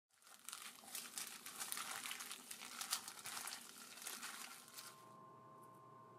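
Dense, irregular crinkling and crackling for about four and a half seconds, then a faint steady hum with a thin tone.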